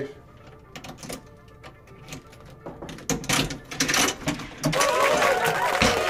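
Buttons pressed on an electronic wall-safe keypad: scattered clicks, then from about three seconds in a louder run of rapid mechanical clicking and rattling, with voices in the background.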